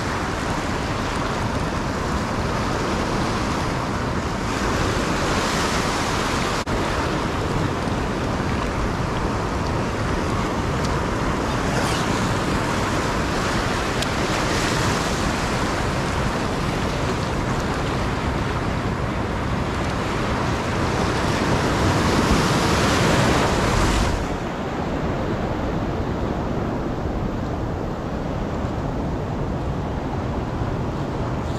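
Ocean surf washing and breaking around a wader's legs. The rushing noise rises and falls with each wave, is loudest just before a sudden drop about four-fifths of the way through, then carries on more softly.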